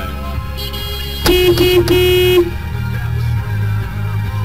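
A car horn honked in three short blasts in quick succession, a little over a second in.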